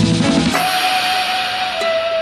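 Background music: a drum-kit beat with bass that drops out about half a second in, giving way to a sustained wash and a held note.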